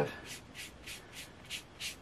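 Small round foam ink blending tool rubbed in short, quick strokes over the torn edges of collaged paper, inking them to distress the white edges. It makes a rhythmic rubbing of about three to four strokes a second.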